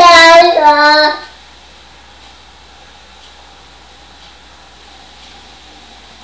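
A loud, high-pitched, drawn-out wordless call that steps down in pitch and stops about a second in, followed by quiet room tone.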